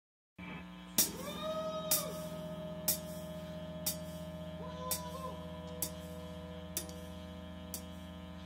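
Steady low electric hum from switched-on guitar and bass amplifiers, with a light tick about once a second and a few faint sliding tones near the start.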